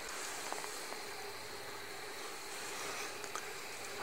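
Faint steady background hiss with a thin high steady tone running through it and a few soft ticks.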